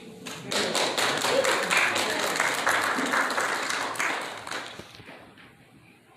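A held piano note fades out at the very start. Then the congregation applauds for about four seconds, the clapping dying away about five seconds in.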